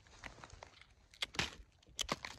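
Quiet crunching and rustling of dry fallen leaves underfoot as a few steps are taken, with two sharper crunches about a second and a half in.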